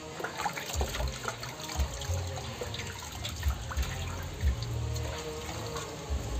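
Water sloshing and splashing in a steel basin as a puppy is washed by hand, with small irregular splashes. Background music with a pulsing bass plays underneath.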